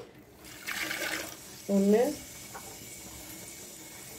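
Water being poured into an empty clay pot, a splashing hiss that starts about half a second in and carries on more steadily as the pot fills.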